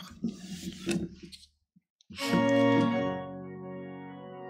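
An organ begins the hymn introduction about two seconds in with a held chord of many steady notes, following a short break of near silence.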